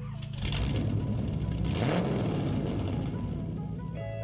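A car engine sound effect, starting about half a second in, its pitch rising and falling as if revving, with background music beneath.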